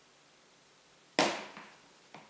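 Near-silent room, then a single sharp knock a little over a second in that fades over about half a second.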